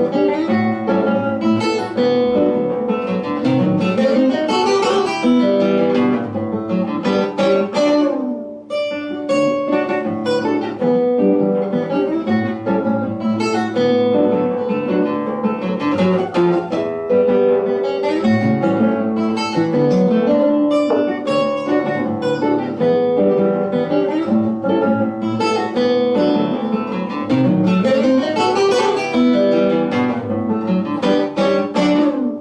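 Two nylon-string classical guitars playing a choro duet, a continuous stream of plucked melody and accompaniment notes, with a brief lull about eight seconds in.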